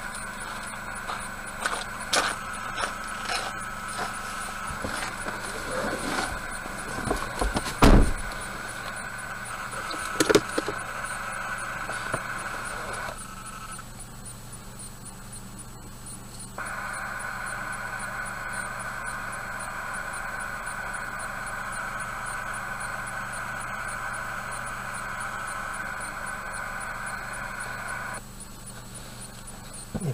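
A stationary car idling, heard from inside, with a steady higher whir that drops out for a few seconds about halfway through and again near the end. A few knocks and handling noises occur, the loudest a thump about eight seconds in.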